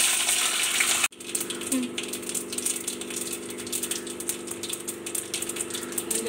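Cashew nuts frying in hot ghee in a kadai, a steady sizzle with fine crackles. The sizzle is loudest for about the first second, then breaks off sharply and carries on a little quieter, over a steady low hum.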